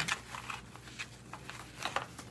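Tinsel being pulled by hand off a spiderweb decoration: a few scattered soft crackles and ticks.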